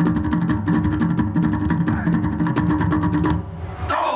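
Polynesian drum group playing a fast, dense, even rhythm on large upright drums. The drumming drops away about three seconds in.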